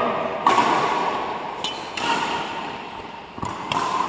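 Badminton rackets striking a shuttlecock during a rally: a few sharp hits, spaced a second or more apart.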